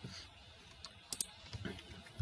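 Two quick computer clicks about a second in, over faint room noise, as the lecture slide is advanced to the next page.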